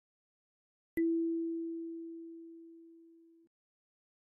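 A single kalimba note, E4, plucked about a second in: one clear, nearly pure tone that fades evenly and is cut off after about two and a half seconds.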